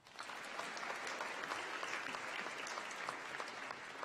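Audience applauding: a steady clapping of many hands.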